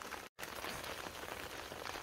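Light rain falling steadily, a soft even hiss. The sound drops out completely for a moment about a third of a second in.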